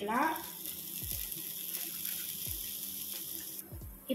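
Hot oil sizzling in a non-stick frying pan as fresh grated coconut is tipped in over frying chillies and garlic: a steady hiss that stops abruptly near the end. A few soft low thumps sound underneath.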